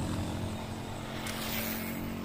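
A steady, low engine drone from a motor vehicle running.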